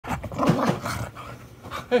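A dog vocalising while being played with: a run of short vocal noises with a low pitch that bends up and down through about the first second, then quieter.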